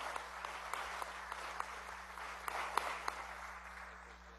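A seated audience applauding, dense hand-clapping that slowly dies down toward the end.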